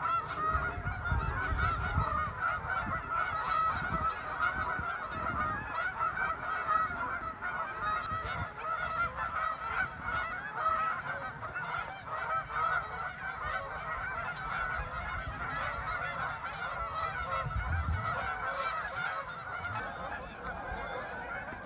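A large flock of geese honking, a dense, continuous chorus of many overlapping calls.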